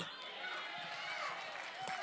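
Faint voices in a large hall over its steady room sound, in a lull between loud amplified speech.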